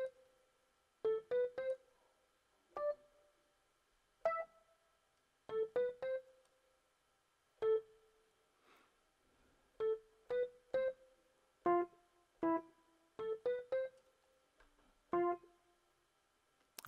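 Short keyboard notes from the Xpand!2 software instrument, electric-piano-like: a quick rising three-note figure heard several times, with single notes tried out in between.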